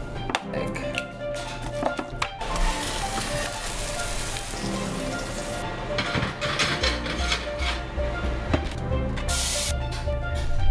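Food frying in a pan, sizzling for about three seconds and again briefly near the end, over background music. A few light clicks and taps come before the first sizzle.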